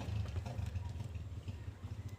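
A low, steady engine rumble, strongest in the first second and a half, with a few faint ticks over it.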